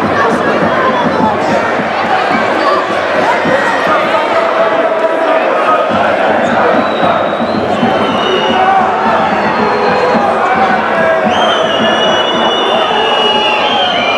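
Football stadium crowd, a dense mass of many voices shouting and chanting. Several high, held whistles join in from about eleven seconds in.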